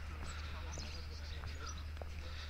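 Outdoor ambience: a steady low rumble with scattered short, high bird chirps and calls.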